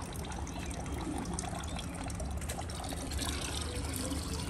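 Water trickling steadily from a drainpipe into an open gutter of stagnant water, over a low steady rumble.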